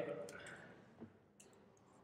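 A spoken word trails off at the start, then a faint short click about a second in and a fainter tick just after, with near-silent room tone around them.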